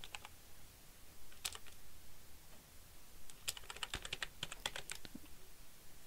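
Computer keyboard being typed on, faintly: an isolated keystroke or two, then a quick run of keystrokes between about three and five seconds in.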